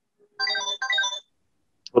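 Mobile phone ringtone for an incoming call: two short melodic phrases, each about half a second long, then it stops.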